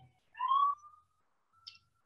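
Emergency vehicle siren passing in the street, its wail coming through in short broken fragments: a brief rising wail about half a second in, then a faint steady tone near the end.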